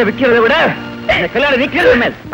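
Spoken dialogue over background music.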